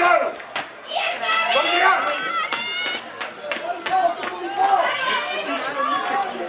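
Teenage rugby players and spectators shouting and calling over one another, several voices at once, with a few sharp clicks among them.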